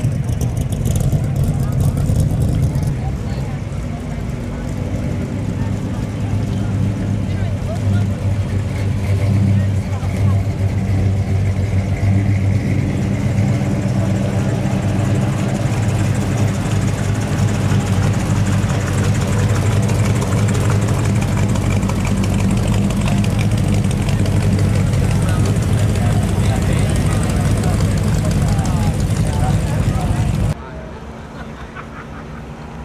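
Classic and custom cars driving slowly past one after another at low revs, with a steady low engine rumble.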